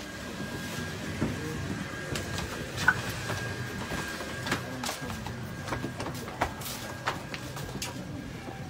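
Job-site cleanup noise in a gutted building: scattered knocks and clatter of debris and work, the sharpest knock about three seconds in, over a steady low hum and a faint steady high whine.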